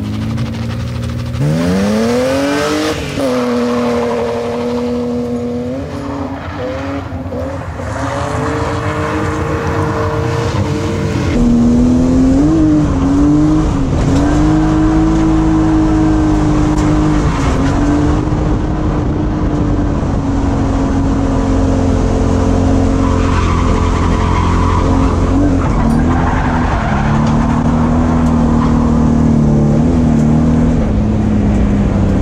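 BMW E36 328is's M52 straight-six held at high revs while drifting, with tyres squealing. The revs climb sharply about two seconds in. A little past ten seconds the sound changes to a louder, steadier note heard from inside the car's cabin, and it sags lower near the end.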